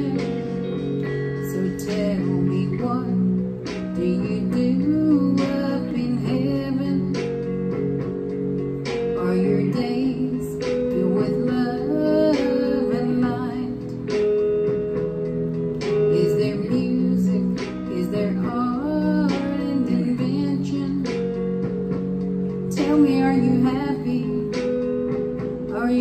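A woman singing slowly with guitar accompaniment, holding long notes that waver in pitch.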